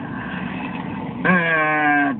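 Steady engine and road noise inside a moving car's cabin. A little over a second in, a man's voice comes in, holding one long, even note.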